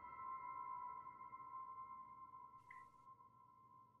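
Ringing bell tones from the opening meditation music, several clear pitches held together after a strike, fading away to near silence.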